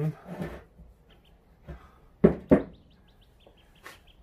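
Two sharp knocks, a quarter second apart, about two seconds in: steel mill parts being handled on a wooden workbench. After them, a small bird chirps rapidly and steadily in the background.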